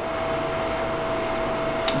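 Steady hum of running machinery: an even noise with one constant mid-pitched whine, and a small click near the end.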